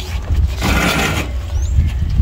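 A short scraping, rattling noise lasting just over half a second, starting about half a second in, over a steady low rumble.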